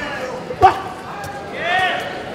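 Short shouted calls from ringside during a boxing bout, over arena room noise. About half a second in there is a sudden loud, sharp sound, and near the end a longer shouted call rises and falls in pitch.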